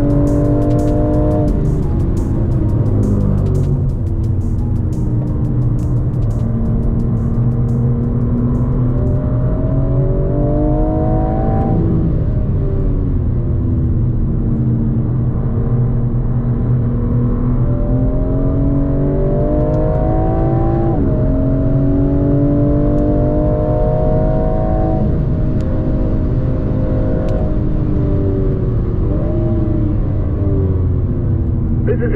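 BMW M4 Competition's twin-turbo straight-six engine heard from inside the cabin on track. Its pitch climbs steadily under acceleration and drops sharply a few times, around a second, twelve and twenty-one seconds in, over a constant low road rumble.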